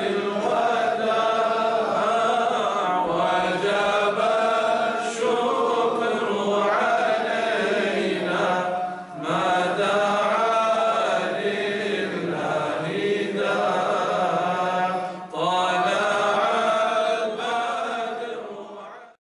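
Devotional vocal chanting in long, sustained melodic phrases, pausing briefly twice and starting to fade out near the end.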